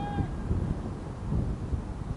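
Wind buffeting the camera microphone as an uneven low rumble, with a brief high-pitched tone at the very start.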